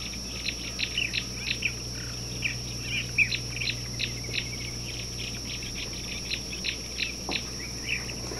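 Birds chirping, short sharp calls coming two or three a second in an irregular run, over a steady high-pitched drone.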